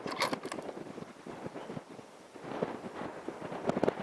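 Quiet open-air background with light wind noise on the microphone, broken by a few soft clicks about half a second in and again near the end.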